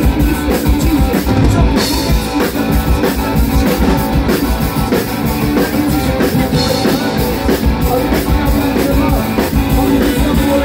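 Live rock band playing loudly: electric guitars and bass over a steady drum-kit beat.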